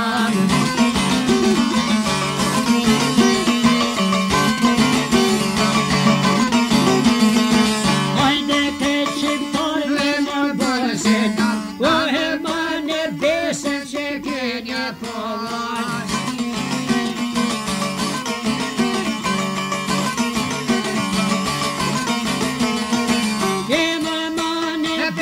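Albanian folk music: plucked string instruments playing a fast, busy melody.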